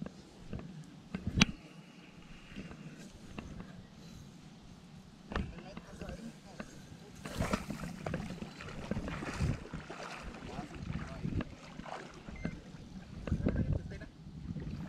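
Water splashing and dripping as a landing net is lifted out of the lake, about seven seconds in, amid faint scattered knocks and rustles of handling.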